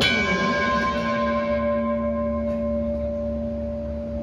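A single struck, bell-like chord at the start, ringing out and slowly fading over several seconds, its highest tones dying away first: the last note of the piece left to sustain.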